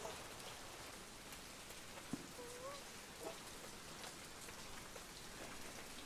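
Faint, steady hiss of room ambience, with a few faint ticks and a short soft squeak about two and a half seconds in.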